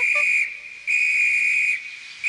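Conductor's whistle blown in long blasts, a steady shrill tone: one blast stops about half a second in, and a second, nearly a second long, follows.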